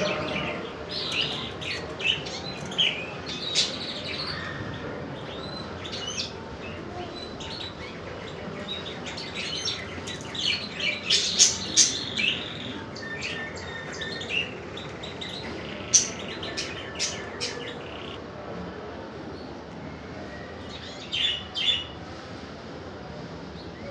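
Small birds chirping in many short, high calls, scattered and busiest about eleven seconds in and again near the end, over steady background noise.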